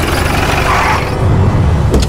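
A Jeep's engine running as the vehicle drives in, heavy in the low end, with a short click near the end.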